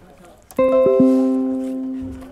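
A short musical chime: three notes are struck in quick succession about half a second in, then ring together as a held chord that slowly fades.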